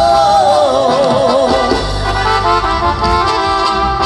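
Live regional Mexican band music played over a PA and recorded from the crowd: a wavering lead melody with vibrato, moving to short stepped notes in the second half, over a heavy bass line.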